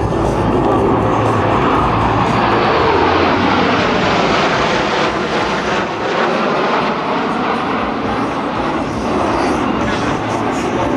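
F-15 Eagle fighter jets flying over in formation, their Pratt & Whitney F100 turbofan engines giving a loud, steady roar, with a whine falling in pitch between about one and a half and three and a half seconds in as the jets pass.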